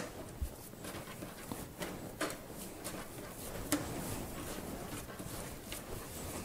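Hands shaping a soft, wet teff sourdough dough into a round boule on a countertop: faint rubbing and handling noise with a few short, soft clicks, the clearest right at the start and others about two and four seconds in.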